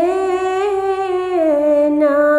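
A woman's solo voice singing a ginan unaccompanied, holding one long wordless note that steps down in pitch about a second and a half in.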